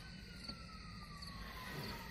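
Quiet background noise with one faint tone gliding slowly and steadily downward in pitch.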